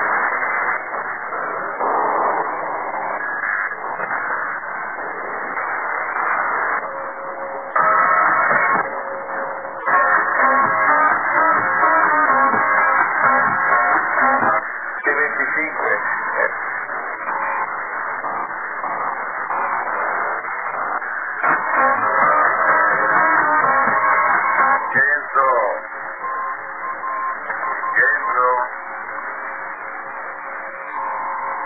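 Music with guitar heard over a shortwave radio receiver: narrow, thin sound with nothing above about 2 kHz, with some voice mixed in.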